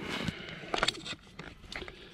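Scattered light knocks and rustles of a handheld GoPro being carried and handled, with the loudest cluster of clicks a little under a second in.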